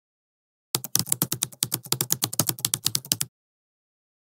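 Computer keyboard typing sound effect: a quick run of keystrokes, about ten a second. It starts just under a second in and stops abruptly a little past three seconds.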